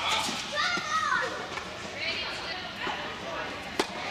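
Children's voices calling out in a large, echoing indoor hall, one high voice rising and falling about a second in, with a single sharp knock near the end.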